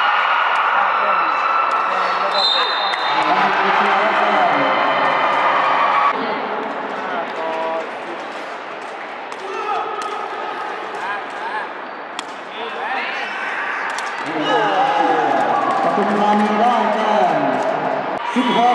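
Sepak takraw ball being kicked and headed during a rally: a few sharp knocks scattered through, over voices of players and spectators.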